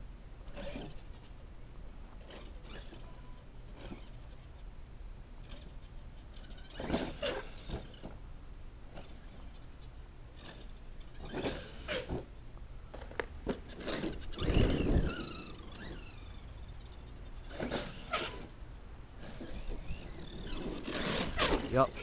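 Electric motor and drivetrain of a Redcat Landslide RC monster truck on a 4S battery, whining up and falling away in several short bursts of throttle, with a low thud about fifteen seconds in. The drivetrain is damaged: the driver takes it for a stripped diff or center spur gear.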